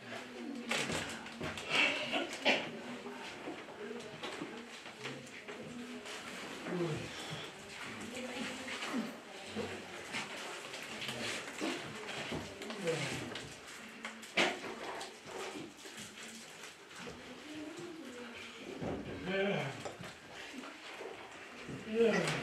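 A man talking in a small room, his voice rising and falling with short pauses.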